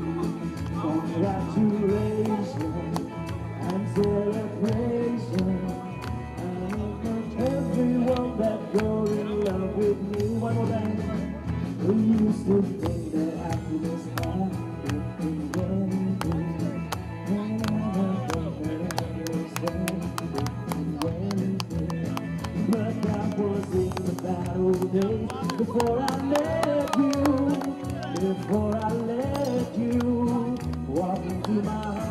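Live band music, with a man singing into a microphone over the band.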